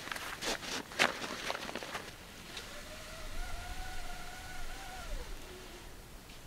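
Nylon stuff sack and its drawstring cord being handled: a few sharp rustles and clicks in the first two seconds. About halfway through comes a single long whistle-like tone, rising slightly and then dropping away after about two and a half seconds.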